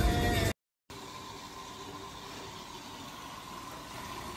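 A song playing in a car cuts off abruptly half a second in. After a brief gap comes a steady hiss of tap water pouring from a faucet into a pedicure foot basin, with a faint steady tone underneath.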